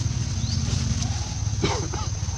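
A short animal call about one and a half seconds in, over a steady low rumble and a thin, steady high whine.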